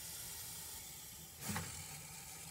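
Faint hissing from an upset albino hognose snake, with a brief, slightly louder sound about one and a half seconds in.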